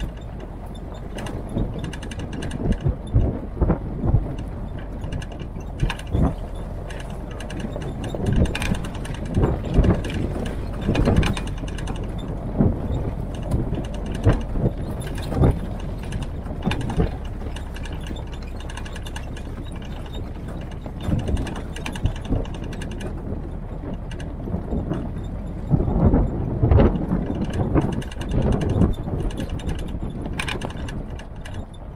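WWII-style military Jeep driving slowly over a rough gravel forest track: a steady low engine drone under frequent, irregular knocks and rattles from the body and suspension jolting over the ruts.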